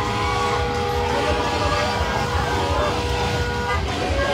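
A vehicle horn sounded in one long, steady blast that cuts off abruptly near the end, over the noise of a cheering roadside crowd.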